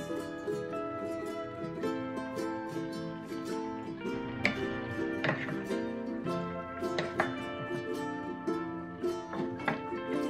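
Light instrumental background music led by a plucked string instrument, playing a steady melody of short notes.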